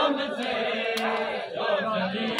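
A crowd of men chanting together in a mourning chant, with one sharp slap about a second in, typical of matam chest-beating.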